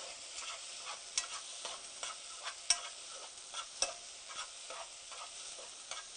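A utensil stirring and scraping food in a pan, with irregular clicks and scrapes over a steady sizzle.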